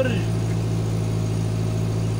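Irrigation water pump's engine running with a steady, even hum.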